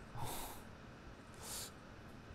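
A man's two short breathy snorts through the nose, a stifled laugh close to the microphone, about a second apart, the first louder.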